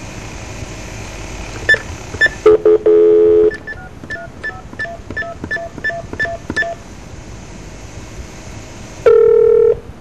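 Telephone line: a steady tone for about a second, then a quick run of about ten touch-tone keypresses, roughly three a second, as a number is dialled. A short loud tone sounds near the end.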